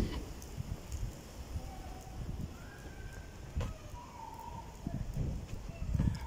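Footsteps of someone walking on a wet pavement, with a rough low rumble of wind on the microphone and a single sharp click about halfway through.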